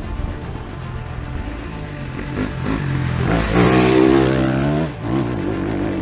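Off-road dirt bike engine under throttle on a trail, revving up to its loudest about four seconds in, easing off briefly near the five-second mark, then pulling again.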